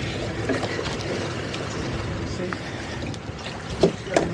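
Boat outboard motor idling low with wind on the microphone, and a single sharp knock just before the end.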